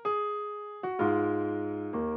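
Software piano playing back from a piano roll: a single held note, a brief second note, then about a second in a full, low chord that rings on.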